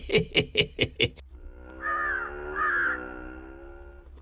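A man laughing in quick bursts, cut off about a second in. A held note of background music follows, with two short crow-like caws over it.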